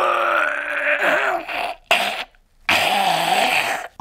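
A man's voice letting out two long, raspy, strained groans of exasperation: the first runs for nearly two seconds, and after a brief pause the second lasts a little over a second.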